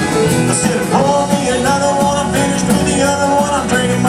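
A live band playing a country-rock song, drum kit and guitar.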